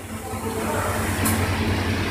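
A steady low machine hum fading in from silence, then holding steady.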